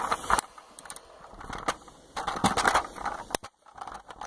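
Plastic Lego pieces of a camper van model clicking and rattling as they are handled close to the microphone. The clicks are scattered, with a denser stretch of clatter about two seconds in.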